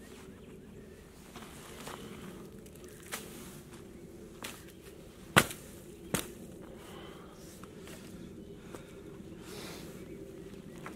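Boots stepping on dry leaves and sticks, with scattered sharp snaps; the two loudest come a little past halfway, less than a second apart.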